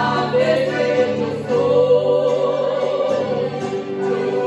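Two women singing a praise song together, accompanied by acoustic guitar and accordion. The voices hold one long note through the middle.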